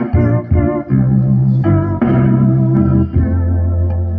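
Backing music on an organ-voiced keyboard: sustained chords held and changing every second or so.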